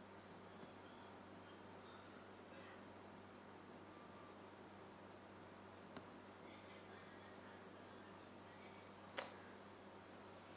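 Near silence: faint room tone with a steady high-pitched whine and a low hum. There is a single sharp click near the end.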